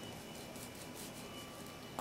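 Quiet room tone: a steady faint hiss with a thin high-pitched hum, and no distinct cutting or tapping sounds.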